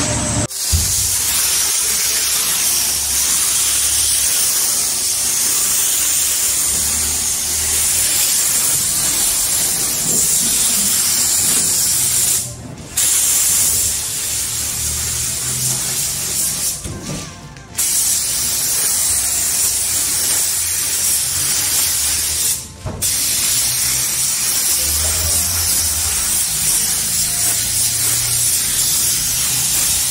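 Compressed-air paint spray gun hissing steadily as paint is sprayed, the trigger let go briefly three times.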